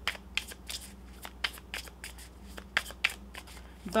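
Tarot cards being shuffled by hand: an irregular run of light card clicks and slaps, several a second, over a faint steady low hum.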